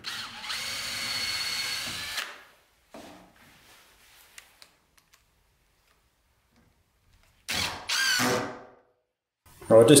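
Cordless drill driving screws through a steel hinge into a pine frame. It runs steadily for about two seconds with a thin high whine, then runs twice more briefly near the end, its pitch rising as it spins up.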